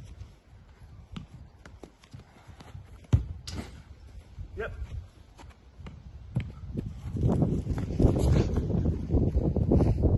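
Football being controlled and kicked on a grass lawn: dull thuds of ball touches and shots among footsteps. The sharpest, loudest thud comes about three seconds in. A louder low rumbling noise then fills the last three seconds.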